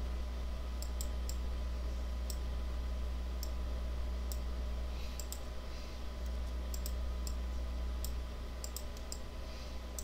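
Computer mouse clicking at irregular intervals, roughly one or two sharp clicks a second, as anchor points are selected and dragged, over a steady low electrical hum.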